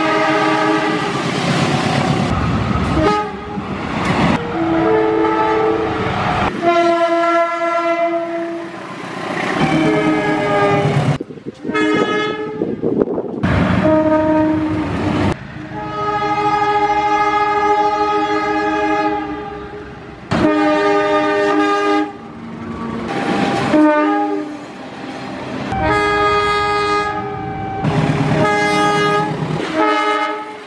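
Air horns of GE U18C/U20C diesel locomotives (Indonesian CC 201 and CC 203 classes) sounding a string of blasts, each a chord of several steady tones, with abrupt changes from one blast to the next. Train running noise fills some of the gaps between blasts.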